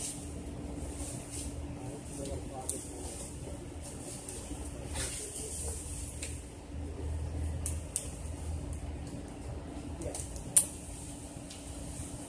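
Squirrel gnawing an acorn in the branches overhead: scattered, irregular sharp clicks and cracks of shell, one much louder crack about ten seconds in, over a low steady background rumble.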